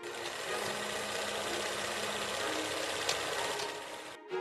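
Film projector running: a steady, fast mechanical whirring rattle.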